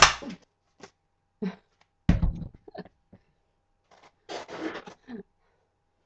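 Paper and a tape roll handled on a cutting mat: a sharp burst at the start, a thump about two seconds in, and rustling near the end.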